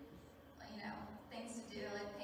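A woman speaking into a microphone through a PA system, with a short pause near the start before her speech resumes.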